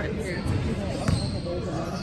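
Basketball bouncing on a hardwood gym floor as a player dribbles before a free throw, with one sharp bounce about a second in. Voices chatter in the background.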